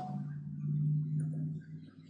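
A man's voice, a low steady closed-mouth hum that fades out near the end.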